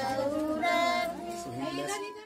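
High-pitched voices, sung rather than spoken, with long held notes, the longest near the middle.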